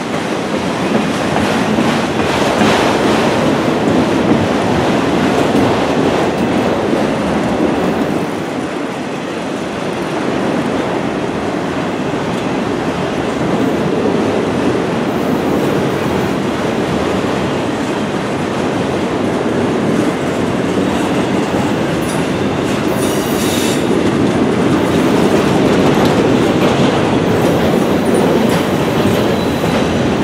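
Freight train of enclosed autorack cars rolling past close by: a steady, loud rumble and clatter of steel wheels on the rails.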